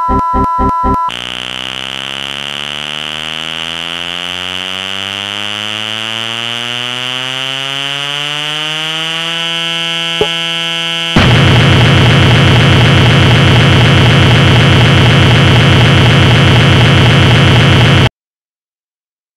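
Computer-generated sound from the machine: a cluster of electronic tones glides upward for about eight seconds and then holds steady. After a single click, a loud harsh buzz starts and runs until it cuts off suddenly.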